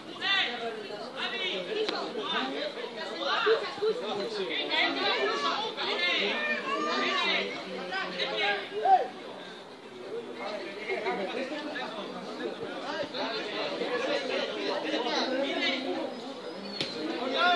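Several people talking at once in overlapping chatter, with a couple of louder voices standing out.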